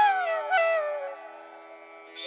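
Background flute music: a melody line slides downward and fades out about a second in, leaving only a faint steady drone.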